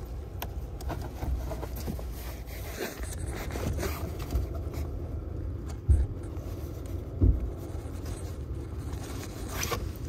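Faint scraping and rubbing as fingers work at a pleated cabin air filter in its plastic housing, trying to slide it out, over a low rumble, with two short thumps about six and seven seconds in.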